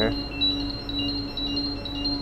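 Carbon dioxide gas alarm beeping in a steady repeating electronic pattern, about two to three pulses a second, set off by slightly raised CO2 levels from fermentation in the washback room.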